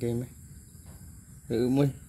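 Steady high-pitched buzz of insects, with a short wordless sound from a low adult voice about one and a half seconds in.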